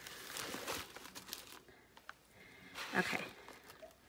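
Paper packaging and crinkle-paper shred rustling and crinkling as hands rummage through a gift box, for about the first second and a half, then a lull.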